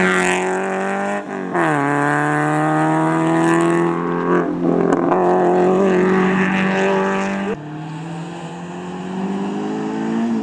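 Renault Clio Sport rally car's engine running hard at high revs; the pitch drops sharply about a second in, then climbs steadily again under acceleration. It is quieter in the last couple of seconds.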